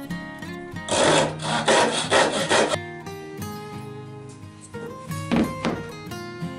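Handsaw cutting through a maple block, a quick run of about six rasping strokes starting about a second in and lasting nearly two seconds, then a brief second run of strokes near the end, over background acoustic guitar music.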